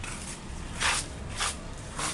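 Footsteps scuffing on a paved path, three short scrapes about half a second apart.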